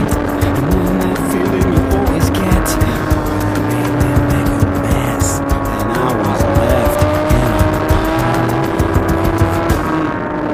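Sport motorcycle engine running at speed, with wind buffeting the microphone; the engine note dips and swings back up about six seconds in, as the bike leans through a curve, then climbs slowly.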